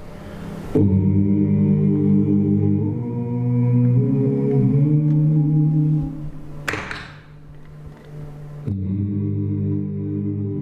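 A male singer's low, sustained vocal notes sung into a microphone cupped in his hands, several pitches held together like a drone, shifting a few seconds in. Partway through there is a short breathy burst, then the held notes come back.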